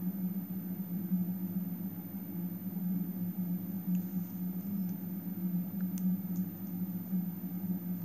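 A steady low hum, with a few faint small ticks of a needle and glass seed beads being handled.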